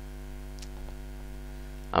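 Steady electrical mains hum, a low buzz with its overtones, picked up by the recording setup, with a few faint ticks near the middle.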